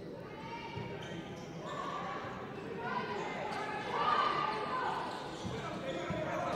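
Basketball arena ambience: voices from the crowd and benches carry through the hall, with a basketball bouncing on the hardwood court and a few faint knocks.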